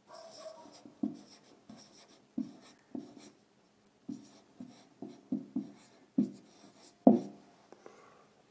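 Marker pen writing on a whiteboard: a string of short, separate strokes with small gaps between them, the loudest about seven seconds in.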